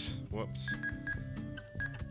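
Soft background music with sustained chords, and a few short high beeps in the middle from the TidRadio TD-H8 handheld's keypad as its menu is stepped through.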